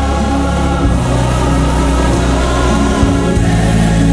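Gospel music with a choir singing over a steady, loud accompaniment with a deep bass.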